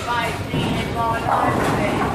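Bowling alley din: background voices over the low rumble of a bowling ball rolling down the lane.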